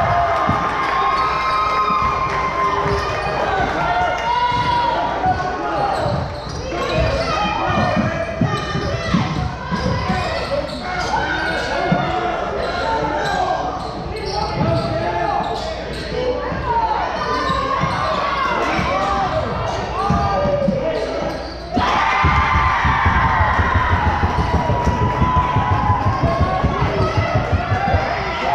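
Basketball bouncing on a hardwood gym floor, with players' and spectators' voices echoing in a large gym. In the last several seconds the ball is dribbled steadily, about three bounces a second.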